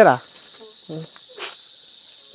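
Insects in the surrounding vegetation keep up a steady, high-pitched drone.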